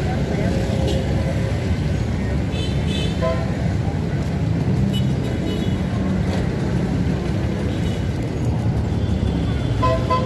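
Busy city street traffic: a steady rumble of passing vehicles, with short horn toots about three seconds in and again near the end.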